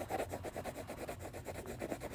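Wax crayon scribbling on sketchbook paper: quick, even back-and-forth strokes as a shape is coloured in.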